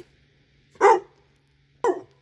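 Dog barking twice, about a second apart, in reply to being told to say bye.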